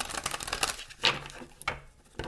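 A deck of oracle cards being riffle-shuffled by hand: a rapid run of card flicks, followed by a couple of sharper snaps as the cards come together.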